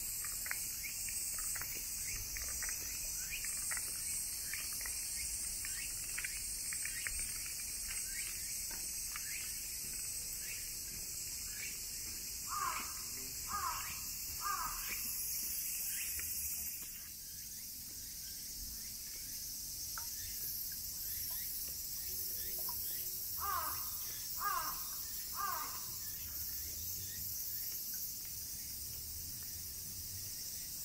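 A crow cawing in two bursts of three caws, about halfway through and again near the end, over a steady high-pitched drone of summer insects that shifts in pitch partway through. Faint short calls of other birds are also heard.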